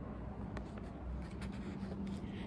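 Faint rustling and light taps of a paperback picture book's pages being handled, over a low steady background hum.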